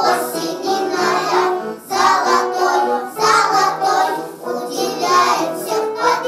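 A group of young children singing a song together, in short phrases with brief breaks between them.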